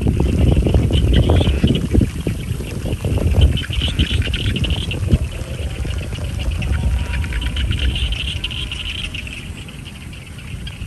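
Wind gusting across the microphone in an open field, a low buffeting rumble that eases near the end. A high trilling comes and goes in the background, swelling about four and eight seconds in.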